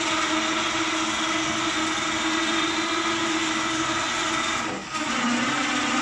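Electric motors of a caravan wheel mover running steadily, their drive rollers pressed against the trailer's tyres to move it forward. The whine cuts out briefly near five seconds in and resumes a little lower in pitch.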